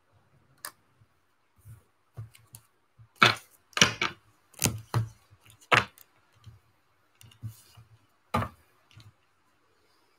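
Tarot card decks and their cardboard boxes handled on a hard desktop: a run of irregular clicks and taps, the sharpest between about three and six seconds in and once more near the end.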